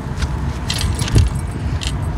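Wind buffeting the microphone as a steady low rumble, with about five light clicks and rattles as a burbot is handled and lifted from a landing net.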